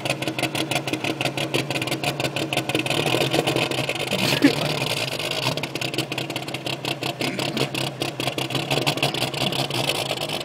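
1951 International pickup's engine with a three-quarter race cam running slow and rhythmically pulsing as the truck creeps forward, with one sharp knock about four and a half seconds in.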